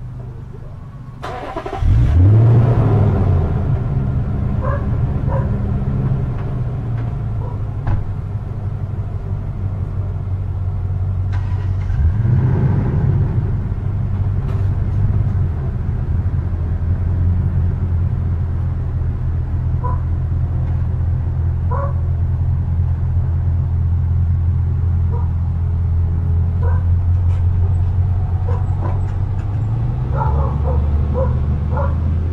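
A truck engine close by starts about two seconds in with a quick rev, then idles with a steady low hum. The revs rise briefly again around twelve seconds in.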